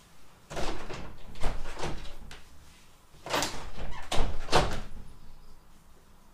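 A door in the house being opened and shut: two clusters of knocks and rattles, the louder one about three seconds in.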